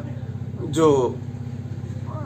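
A steady low hum running under a pause in speech, with one short spoken word a little under a second in.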